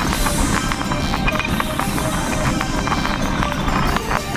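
A light propeller airplane's engine running, heard from inside the cockpit, with music playing over it.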